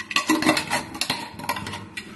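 Gold metal screw lid being twisted onto a glass jar: a run of small, irregular clicks and scrapes of metal on glass.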